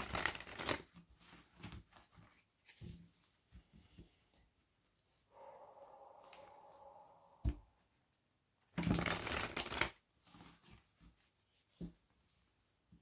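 A deck of oracle cards shuffled by hand: soft rustling and sliding of the cards, with louder bursts of shuffling at the start and about nine seconds in.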